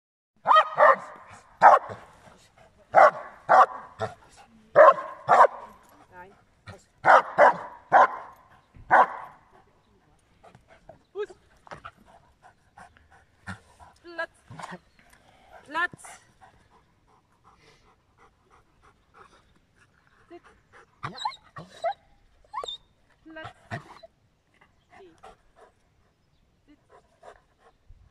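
Giant schnauzer barking: about a dozen loud, deep barks in quick runs over the first nine seconds, then only quieter, scattered short sounds.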